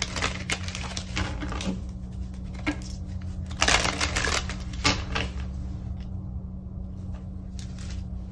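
Quick clicks and taps of small objects being handled close to the microphone, with a dense burst of clicking and rustling about three and a half seconds in and only scattered ticks near the end, over a steady low hum.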